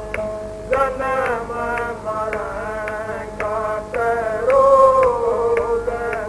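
A devotional shabad (hymn) sung in a wavering melody over steady held tones, with a light percussive strike about once a second.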